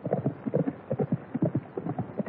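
Horse hoofbeats: a quick, uneven run of clip-clops from a horse being ridden.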